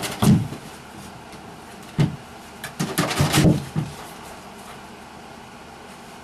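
A plastic video-game rocker chair is shoved and tipped over onto carpet by a puppy. There are several knocks and dull thumps, the loudest just after the start and a cluster about three seconds in.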